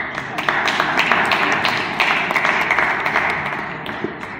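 Crowd applauding: many hands clapping at once, starting suddenly and dying away near the end.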